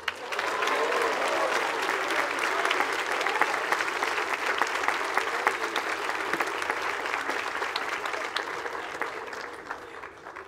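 An audience applauding, starting at once and fading away over the last couple of seconds.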